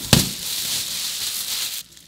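A knock at the start, then a clear plastic bag crinkling and rustling loudly for nearly two seconds as it is handled around a resin 3D printer, stopping just before the end.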